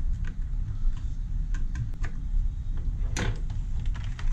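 A hand screwdriver turns small screws into a plastic blaster shell and guide rail, making light scattered ticks and clicks. There is one louder knock about three seconds in, over a steady low hum.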